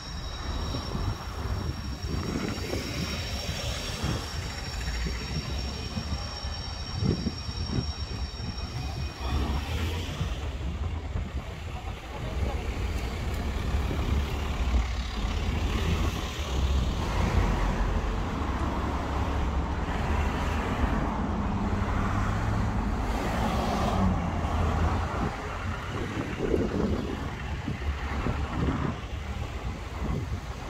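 Road traffic passing along a busy town road, a steady rumble of cars and engines. A high steady whine runs through the first ten seconds or so and then stops, and a heavier engine's hum passes in the middle.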